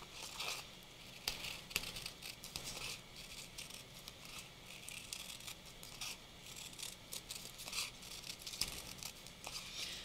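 Scissors cutting around a paper sticker: a run of quiet, irregular snips with light paper rustling.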